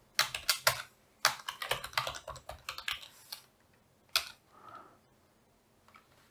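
Typing on a computer keyboard: a short run of keystrokes in the first second, a longer run from about one to three seconds in, then a single keystroke after a pause.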